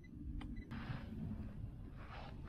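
Baitcasting fishing reel: a sharp click as the spool is released, then a soft, steady whir of line paying out as the lure sinks.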